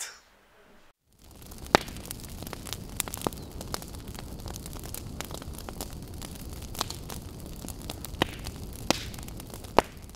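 Fire burning: a steady rushing noise with sharp crackles and pops scattered through it, starting about a second in after a brief quiet.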